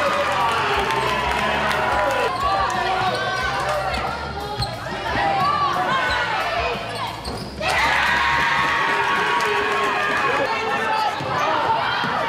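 Live basketball game sound in a gymnasium: the ball bouncing on the hardwood floor, sneakers squeaking as players cut and stop, and players' and coaches' voices calling out, all echoing in the hall.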